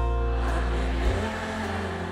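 Live pop band music: held chords over a deep bass note, moving to a new chord about a second in.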